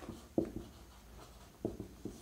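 Marker pen writing on a whiteboard: a few short, faint strokes, one about half a second in and two close together near the end, as an equation is written.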